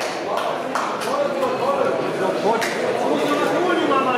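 Crowd of spectators talking among themselves in a large sports hall, many voices overlapping into an indistinct babble, with a few sharp clicks.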